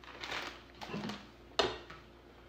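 Crinkling of a plastic shredded-cheese bag, then a sharp knock of a serving spoon against a saucepan about one and a half seconds in.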